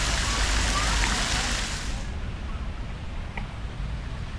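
Park fountain jets splashing into a stone basin, a steady dense hiss like rain, which cuts off abruptly about halfway through, leaving quieter open-air background.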